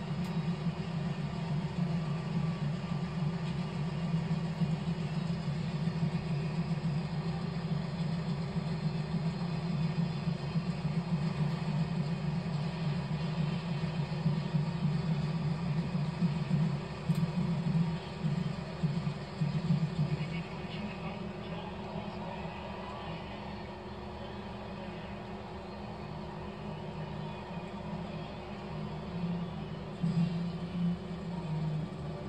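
Marching band and stadium crowd playing through a TV speaker, heard muffled and bass-heavy as a steady low rumble; it gets quieter after about twenty seconds.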